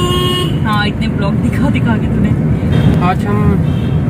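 Steady road and engine rumble of a car heard from inside the cabin while driving, with a brief horn toot at the very start.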